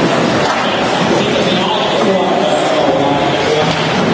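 Several electric 1/10-scale 4WD RC buggies running around an indoor track, their motors whining up and down in pitch, over a steady background of voices in the hall.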